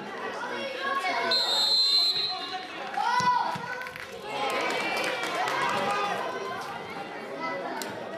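Shouting voices of young players and spectators at a youth football match, with a short steady blast of a referee's whistle about a second and a half in.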